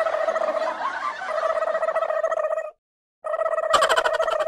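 An edited-in comedy sound effect: a buzzing, warbling tone held on one steady pitch. It drops out to dead silence for about half a second near the three-second mark, then resumes.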